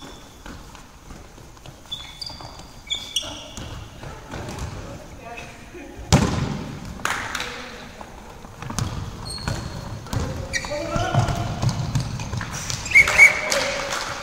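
Indoor handball play on a wooden sports-hall floor: trainers squeaking, the ball bouncing and thudding, and players calling out, all echoing in the hall. A loud thud comes about six seconds in, and a short double whistle blast sounds near the end.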